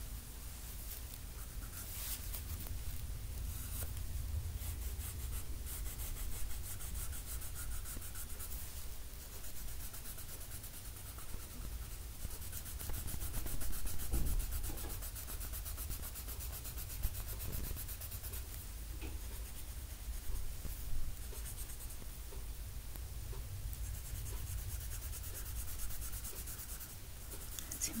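Close rubbing and scratching of a coloring medium worked back and forth over paper in continuous shading strokes, with a steady low hum underneath.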